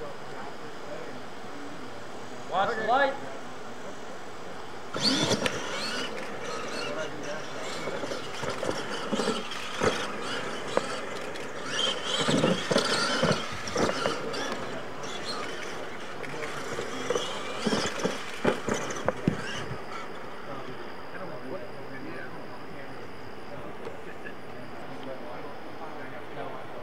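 RC monster trucks racing on a dirt track: a short rising motor whine about three seconds in, then from about five seconds to twenty, the whine of the trucks' motors mixed with dirt spray and sharp knocks as they run over the ramps.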